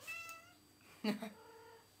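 Domestic cat meowing: one drawn-out call in the first half-second.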